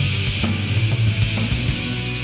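Experimental doom metal band recording: distorted electric guitar and bass holding low, sustained notes, with sharp accents about every half second.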